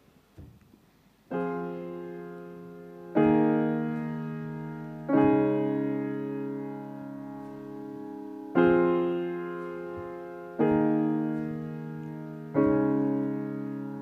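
Solo piano opening a slow ballad: six sustained chords, each struck and left to ring and fade before the next, after about a second of near silence.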